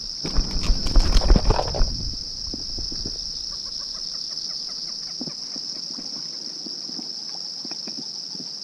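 A steady, high-pitched insect chorus runs throughout. Over it, for the first two seconds, there is a burst of close rustling and knocking as a caught traíra is handled and unhooked with pliers, then a few faint scattered ticks.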